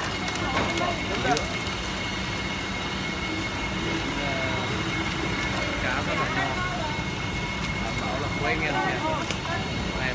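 Busy fish market ambience: a steady mechanical hum under the voices of people talking in the background, with a few short knocks.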